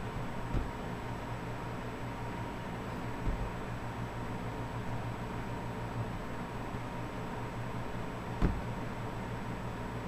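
Steady background hum and hiss with faint steady tones, the kind a running computer and room make, broken by three short, soft low thumps about half a second, three seconds and eight and a half seconds in.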